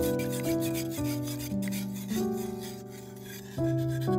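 Wire whisk beating a runny egg-and-milk batter in a ceramic bowl: fast, even scraping strokes of the wires against the bowl, over background music.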